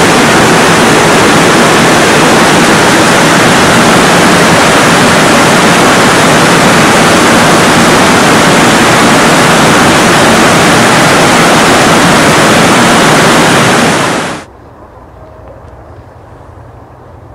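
Loud, steady rush of running water that cuts off abruptly about fourteen and a half seconds in.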